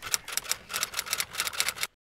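Typing sound effect: a fast, irregular run of sharp clicks that stops suddenly just before the end.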